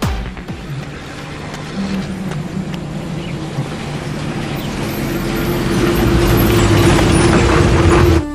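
Film soundtrack: a low rumbling swell that grows steadily louder, with a held note joining about five seconds in, cutting off suddenly at the end.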